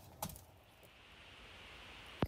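A single faint sharp click about a quarter second in, then quiet low hiss of room tone.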